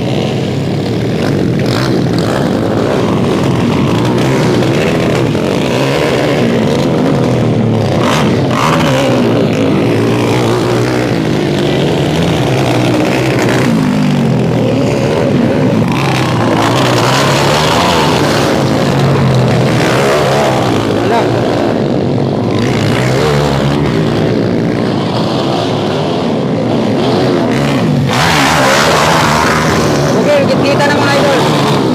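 Dirt bike engines running and revving up and down repeatedly as the bikes push through mud.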